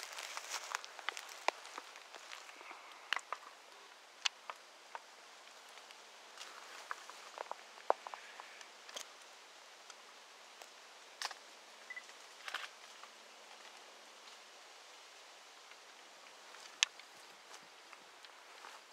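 Sparse, irregular crunches and rustles of dry leaf litter being stepped on or moved through, with quiet in between.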